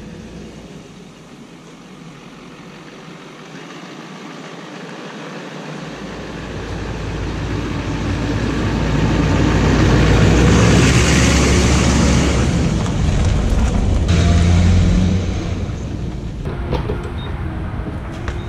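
GMC pickup truck driving up on a gravel lane, its engine and tyre noise growing steadily louder to a peak about ten seconds in, holding there, then falling off a few seconds later as it passes.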